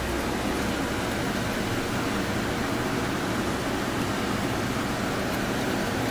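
A steady, even hiss of noise with no clear pitch, spread from low to very high pitches; it swells in just before and holds level throughout.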